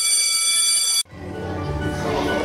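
Electric school bell ringing steadily for about a second and cut off abruptly, followed by background music.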